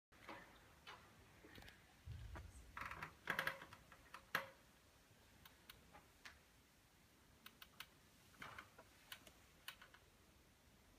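Near silence with scattered small clicks and rustles. There is a low thump about two seconds in, rustling just after, and a sharp click a little past four seconds, the loudest.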